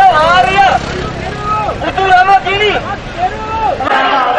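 A voice speaking loudly over background crowd babble, with a low rumble underneath in the first couple of seconds.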